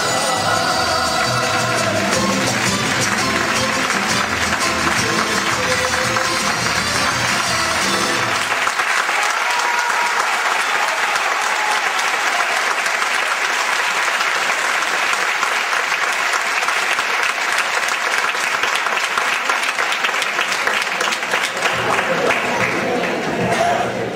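A live band of trumpets, violins and guitars with singers plays the end of a song. About eight seconds in the music stops and an audience applauds steadily.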